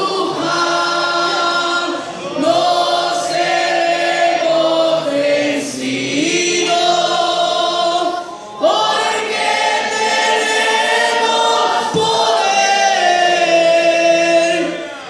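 A church youth choir singing together, in long held phrases with brief breaks about two and eight and a half seconds in.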